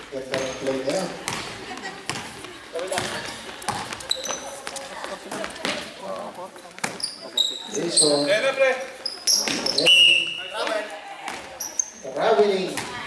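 Indoor basketball game: the ball bouncing on the court, brief high-pitched squeaks of players' shoes, and players' voices calling out.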